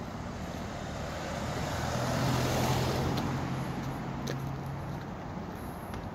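An SUV driving past close by: its noise swells to a peak about two and a half seconds in, with a steady engine hum, then fades away.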